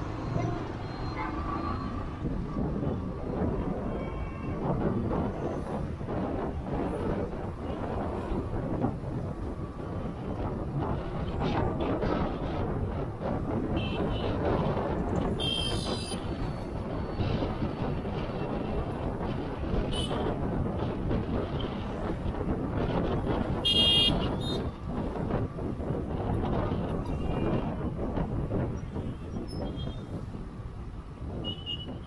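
Road traffic noise heard from a moving vehicle: a steady rumble of engines and tyres, with short vehicle horn toots about fifteen seconds in and again, louder, about twenty-four seconds in.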